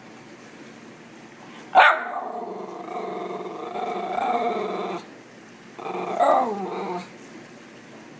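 A schnauzer begging for food: a sharp bark about two seconds in runs into a long, pitched, growling vocalisation lasting about three seconds. A second, shorter one follows near six seconds.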